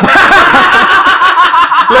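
A group of men laughing loudly together in one long continuous burst that stops near the end.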